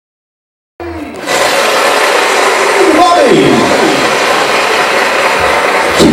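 Loud, dense bar din of many voices mixed with music, starting suddenly about a second in, with a voice sliding down in pitch about three seconds in.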